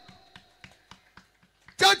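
A quick run of light, sharp clicks, roughly six a second, over a faint steady hum. A loud man's voice comes back near the end.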